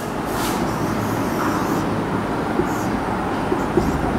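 Steady rumbling background noise with a few faint, brief squeaks.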